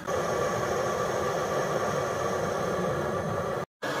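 Butane burner of a knockoff Jetboil-style stove running with a steady hiss as it heats water; the sound cuts off abruptly just before the end.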